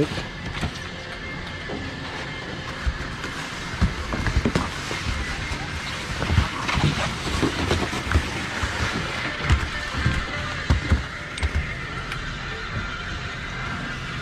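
Bottom terminal of a fixed-grip Borvig double chairlift running: a steady mechanical hum with irregular low knocks as chairs swing around the return bull wheel and pass through the loading station.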